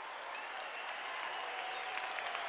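Concert audience applauding at the end of a song, the applause building slightly and holding, with a few sustained cheers over it.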